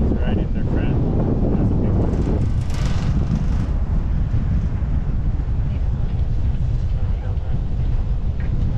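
Wind buffeting the microphone of a camera riding a chairlift, a steady low rumble, with a brief hiss about three seconds in.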